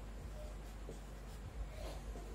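Marker pen writing on a whiteboard: faint, short scratchy strokes as letters are formed, with a soft knock about one and a half seconds in.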